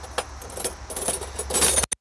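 Metal hand tools clinking and rattling in irregular small clicks as they are rummaged through in search of a 12 mm socket or wrench, busiest near the end.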